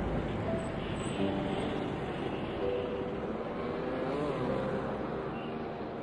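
Street traffic of motorcycles and cars moving in a dense stream, a steady mass of engine and tyre noise with a few brief pitched tones over it.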